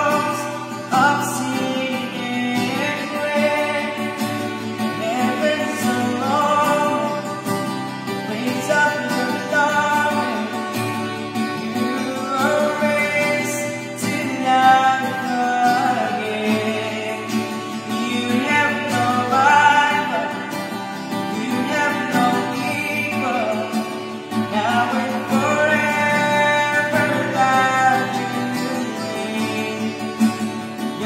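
A young man singing a worship song, accompanied by a strummed acoustic guitar.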